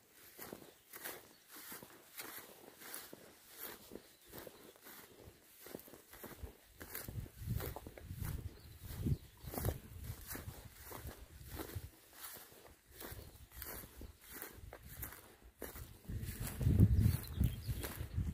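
A person's footsteps through long meadow grass, a steady walking pace of about two steps a second, with a louder low rumble near the end.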